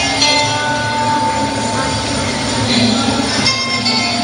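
Recorded backing soundtrack for a mime performance, played over a hall's loudspeakers: a sound-effect passage rather than plain music, with one long held tone in the first half over a dense, rumbling mix.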